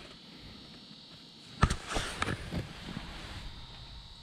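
A sharp knock about one and a half seconds in, then a few smaller clicks and knocks: the handling of the rod and the freshly caught fish. A faint, steady high whine runs underneath.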